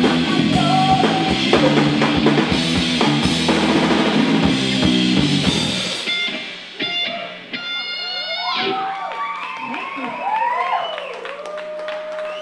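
Live metal band playing loud, with electric guitars, bass and a drum kit, that stops abruptly about halfway through. After it, scattered shouts and whoops from the audience over a low steady hum from the stage.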